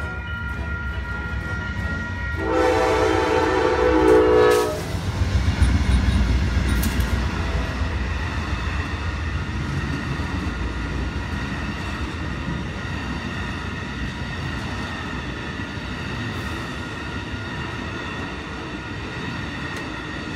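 Amtrak passenger train passing a grade crossing. The crossing signal bell rings steadily, the locomotive's horn sounds one loud blast of about two seconds, and then the cars roll by with a long rumble and the clack of wheels on the rails.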